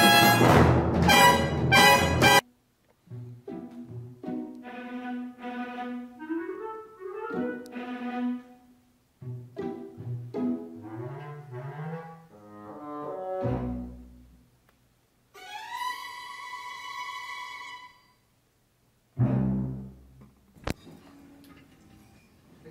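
Orchestra playing in a scoring session: a loud brass passage that cuts off about two seconds in, then quieter, softer phrases broken by short pauses, including one long held note, and a louder low chord near the end.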